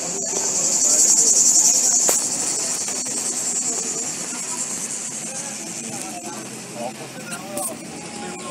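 A high buzzing chorus of cicadas in roadside trees, loudest in the first two seconds and then fading, heard from a moving vehicle over its running noise and faint voices.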